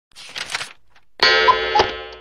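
Intro sound effects: a short swish, then a bright ringing tone with two clicks over it, fading out, as of a subscribe-button click and notification-bell chime.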